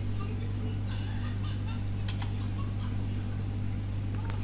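Steady low electrical hum, with faint short chirps scattered through it.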